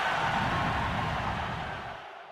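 A steady rushing whoosh with a low rumble underneath, fading away near the end: the sound effect of a logo ident.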